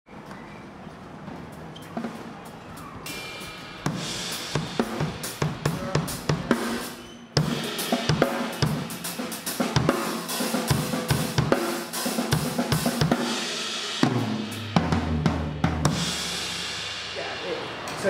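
A drum kit being played with snare, bass drum and cymbals, alongside a band, starting quietly and filling out after a few seconds. The drumming stops about three seconds before the end, and a sustained low note rings on.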